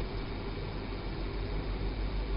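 Steady room tone: a low, even hiss with a faint hum underneath.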